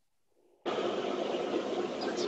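Dead silence, then a little over half a second in a steady hiss of open-line noise cuts in abruptly and holds.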